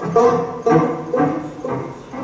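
Live chamber music: plucked banjo notes struck about twice a second over held lower string notes from the cello, getting quieter through the passage.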